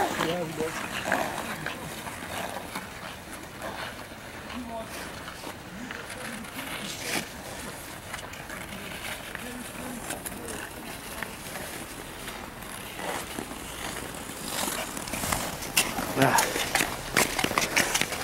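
Nordic skate blades scraping and hissing on outdoor canal ice, stroke after stroke, with a run of sharper, louder scrapes near the end.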